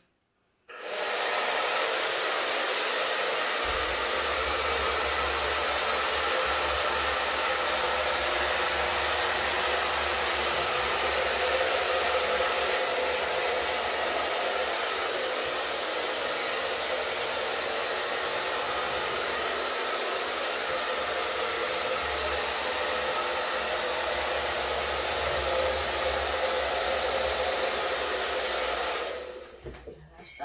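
Handheld hair dryer running steadily, blowing wet acrylic paint across a canvas in a Dutch pour. It switches on about a second in and cuts off near the end.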